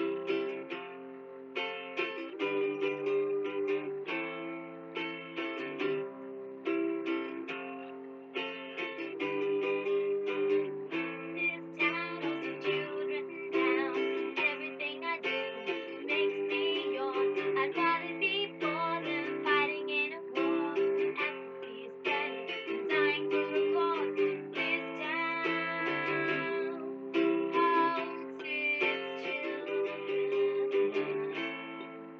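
Acoustic guitar strummed in a steady rhythm, with a woman singing a song over it.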